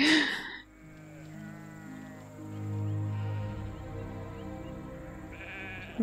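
Film soundtrack: sustained low music notes enter one after another and build into a chord, with sheep bleating over it. A laugh fades out in the first half-second.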